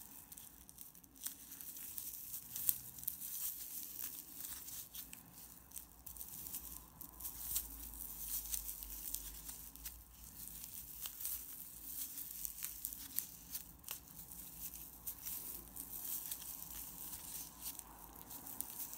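A metal crochet hook working single crochet stitches in stiff, flat tape yarn close to the microphone: a steady run of small irregular rustles and clicks as the yarn is hooked and pulled through.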